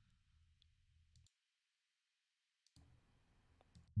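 Near silence, with a few faint computer mouse clicks scattered through it.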